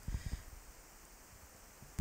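Pause in speech filled with the faint steady hiss of a Fifine K6 handheld dynamic microphone's signal with the preamp gain pushed high, with a few soft low thumps near the start.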